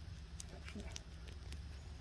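Faint, scattered small crackles and ticks from a handful of lit paper birch bark, over a low steady hum.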